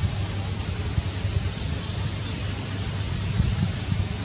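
Outdoor ambience: a steady low rumble of wind on the microphone, with a series of high, short chirps repeating about twice a second.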